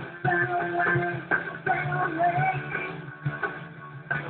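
Live rock band playing a fast song: electric guitar carrying a melody line over bass and steady drum hits, with no vocals. The sound is dull, with no treble.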